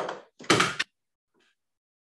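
Two brief rustles, less than a second apart, as a book or booklet is picked up and handled close to the microphone.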